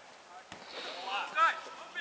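Faint shouts from players on an open football pitch, with a single soft thump about half a second in.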